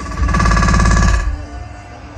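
Live electronic music played loud through a festival sound system. A very rapid, heavy-bassed stuttering burst lasts about a second from just after the start, then the music drops back to a lower level.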